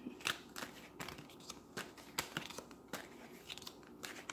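Tarot cards being shuffled and handled by hand: a series of faint, irregular flicks and clicks as the cards slide and tap against each other.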